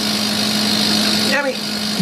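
Steady machine hum from the laser-cutter workshop equipment running: a constant low drone with a higher whirring hiss above it.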